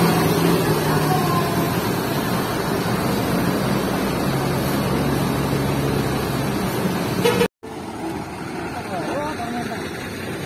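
Large bus diesel engine running at idle close by, a steady low drone. Near the end it cuts abruptly to a quieter, more distant terminal scene.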